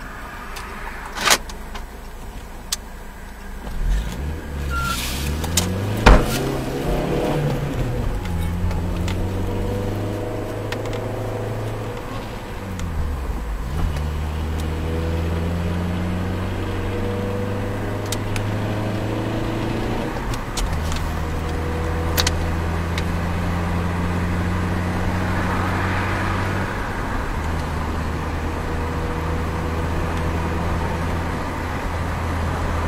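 A car engine heard from inside the cabin, pulling up through the gears: its hum rises in pitch, dips at each gear change and holds steady at cruising speed. A few sharp clicks and one loud knock come in the first six seconds.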